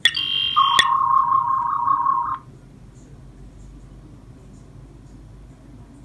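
Electronic tricorder-style sound effect from the Raspberry Pi PiCorder's speaker, set off by a button press. It opens with a brief burst of high beeps and a click, then goes into a wavering scanning tone that lasts about two seconds and stops abruptly.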